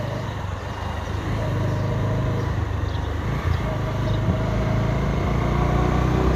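A motor vehicle engine running with a steady low rumble, growing a little louder after about a second.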